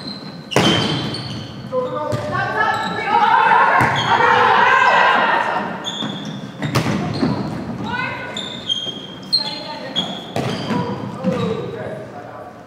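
Volleyball rally on a hardwood gym court: the ball struck with sharp smacks every second or two, sneakers squeaking on the floor, and players shouting calls, all echoing in the large hall.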